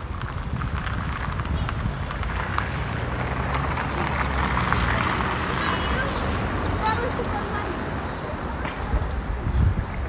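City street ambience: a steady low rumble of traffic, with footsteps on the pavement and passers-by talking in the background.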